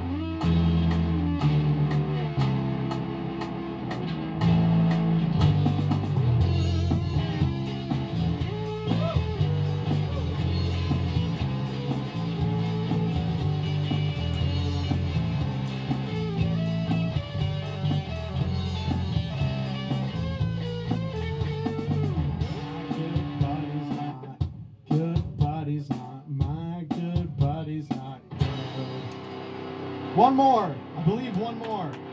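Electric guitar played live over a pre-recorded backing track with bass and drums, an instrumental rock passage without vocals. About 24 seconds in the bass drops out and the music thins to scattered hits as the song winds down.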